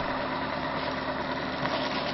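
A homemade magnet-wheel pulse motor with copper coils, running steadily at about 545 RPM: a steady whir with a faint constant hum.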